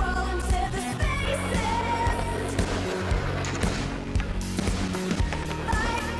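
Background song with a singing voice over a steady beat.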